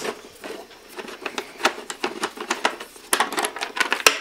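Irregular light clicks and taps of small bolts and plastic fairing panels being handled by hand on a KTM Adventure motorcycle's front fairing, with a short cluster of sharper clicks about three seconds in.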